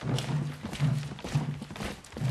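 A steady, slow drum beat, about two low strokes a second, with sharper clicks and knocks between the strokes.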